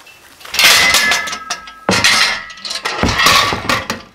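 Metal climbing-anchor hardware clinking and rattling in three loud bursts as force is applied to the anchor, with a faint metallic ring.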